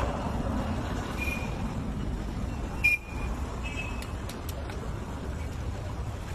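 Steady low rumble of road traffic, with a few short high toots or beeps and a sharp knock just before three seconds in, followed by a few light clicks.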